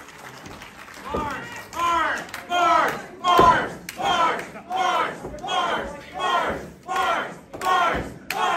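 Wrestling crowd chanting in rhythm: a repeated shout about every two-thirds of a second, each falling in pitch. It starts about a second in and gets louder.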